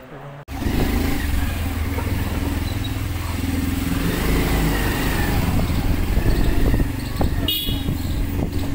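A motorbike ride heard from on board: the engine running steadily with wind noise on the microphone, starting abruptly about half a second in. A brief high-pitched sound cuts through near the end.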